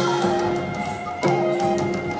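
Live band music: sustained instrumental chords, with a sharp percussion accent and a chord change just after a second in.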